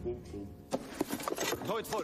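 Mostly speech: voices talking, after a brief steady pitched tone at the very start.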